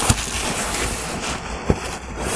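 Paper and cardboard rustling as hands rummage inside a cardboard shipping box, with two sharp knocks, one near the start and one near the end.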